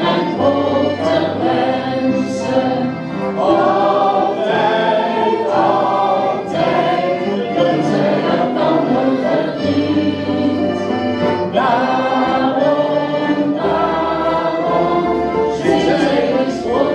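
An accordion band, mostly button accordions with a flute, playing held chords over a steady bass, with a group singing along.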